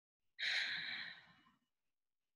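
A woman drawing one audible breath of about a second, starting about half a second in, with no voice in it.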